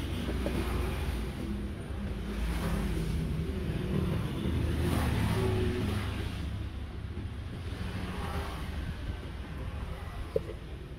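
A motor vehicle engine running on the street, a low steady hum that swells louder about halfway through and then eases.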